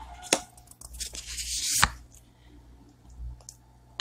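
Oracle cards being handled: a sharp tap, then a rising papery swish of a card sliding off the deck that ends in a snap a little under two seconds in.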